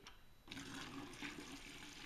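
Water poured from a jug into a plastic bucket onto dry-mixed glaze powder, starting about half a second in: a faint, steady pouring and splashing as the water is added to the dry glaze batch.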